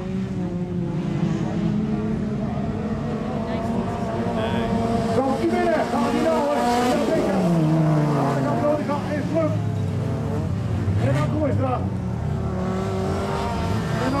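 Race car engines on a dirt autocross track, revving hard as the cars pass. Several engines overlap in a steady drone, and their pitch falls as cars go by, clearly about eight seconds in and again near the end.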